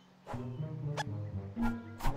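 Orchestral film score coming in about a quarter second in. Over it, an animated rodent character gives two short, rising squeaks: one about a second in and another near the end.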